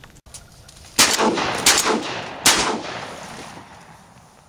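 Shotgun fired three times in quick succession, under a second apart, each shot trailing off in echo.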